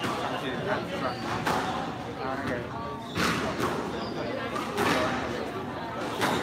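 Indistinct voices of people talking, with several sharp smacks of a squash ball against racket and walls starting about three seconds in as a rally gets going.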